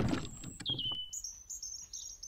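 The tail of a loud rush of noise fades out, then birdsong sound effects: a short falling whistle followed by a quick run of high chirps.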